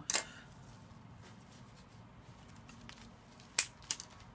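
Florist's scissors snipping plant stems: one sharp snip just after the start, then two more in quick succession near the end.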